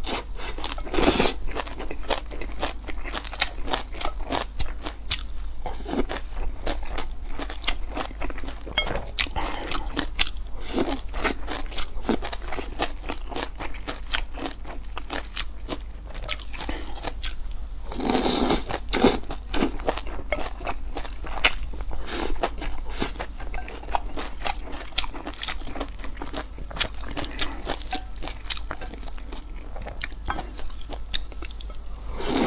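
Close-miked eating: a person chewing and biting spicy stir-fried octopus and noodles, with many quick crisp crunches. Louder bursts come about a second in and again around eighteen seconds.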